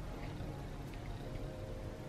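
Quiet room tone: a low, steady hiss with a faint hum and a few faint soft ticks, and no distinct sound event.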